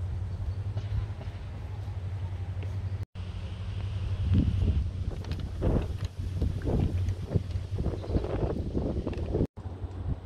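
Wind buffeting the microphone: a steady low rumble, with stronger gusts in the second half.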